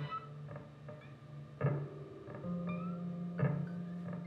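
Free-improvised experimental music from electric guitar, electric bass and drums. Sparse, sharply plucked notes come about once a second, with short upward pitch glides. Sustained low bass notes lie underneath.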